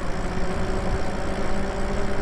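Lyric Graffiti electric bike riding along a street: a steady hum from its electric motor over the rush of tyres and wind.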